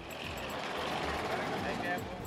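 Steady outdoor traffic and vehicle engine noise, an even rumble and hiss with no single sound standing out.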